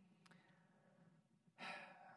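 Near silence, then a man's audible breath about one and a half seconds in, short and breathy, picked up close on a clip-on microphone.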